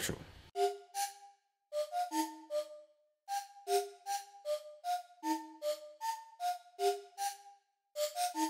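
Software-synth flute lead (an Omnisphere flute patch) playing back a short looped melody in a minor key. The notes are short and separate, a little over two a second, each with a breathy start and silence between.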